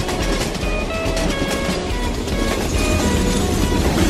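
Background music with steady plucked notes, over a cartoon train sound effect of rattling and clacking wheels on rails that grows louder near the end.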